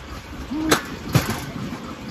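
Steel wheels of a rail explorer pedal cart rolling on railroad track: a steady low rumble with two sharp clicks about half a second apart, and a brief low hum-like sound just before the first click.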